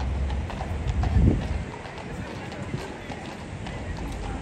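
Hooves of two police horses clip-clopping at a walk on a paved road, over a low rumble that swells about a second in and stops about a second and a half in.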